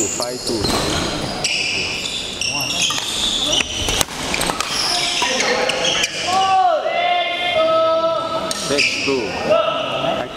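Badminton doubles rally on an indoor court: sharp racket hits on the shuttlecock and short squeaks of shoes on the court floor, mostly in the second half, echoing in a large hall.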